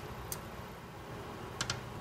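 Faint metallic clicks of a hand tool working the steel fasteners that hold a tube radio's tuning condenser to the chassis: one small tick about a third of a second in and a quick pair near the end.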